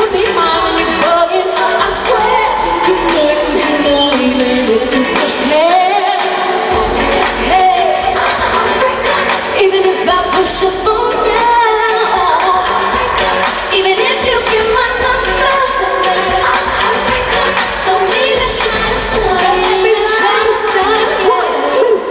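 Live R&B performance: several women singing into microphones over amplified music, heard from the audience in a large hall.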